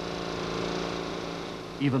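An engine running steadily, a low, even drone.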